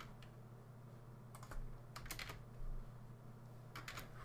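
Computer keyboard keystrokes: a few scattered key presses in small clusters, faint, over a low steady hum.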